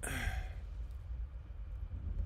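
A man's short breathy sigh in the first half second, then only a low steady hum.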